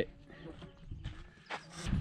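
A goat bleating faintly, with a short knock about three-quarters of the way through.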